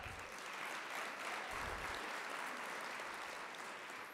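Audience applauding, a steady spread of clapping that tapers off near the end.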